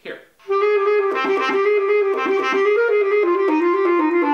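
Bass clarinet playing a quick slurred passage in the clarion register, leaping back and forth between A and D, starting about half a second in. The notes come out smoothly without squeaking because the player holds the A's tongue voicing while fingering the D.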